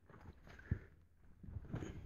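Faint handling of a latex foam mattress layer as it is flopped into place: one soft, dull thump a little under a second in, and light scuffling near the end.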